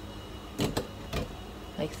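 A few short knocks, about half a second and a second in, as celery pieces are dropped into the plastic feed chute of a switched-off Bosch juicer, over a steady low hum.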